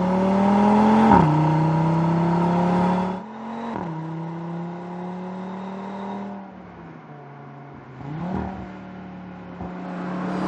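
Audi RS3's turbocharged five-cylinder engine accelerating, its pitch climbing and dropping with upshifts about a second in and again near four seconds. It is quieter from about six and a half seconds, with a short rev near eight seconds.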